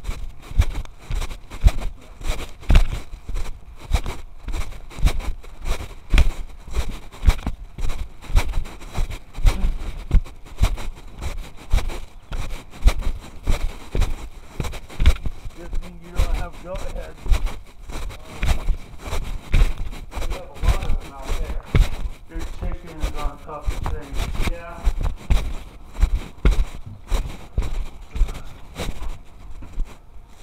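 Muffled handling noise from a covered microphone: irregular low thumps and rubbing, several a second. Faint muffled voices come through at times.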